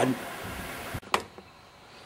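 A man's voice trailing off, then faint room hiss broken by a single short click about a second in.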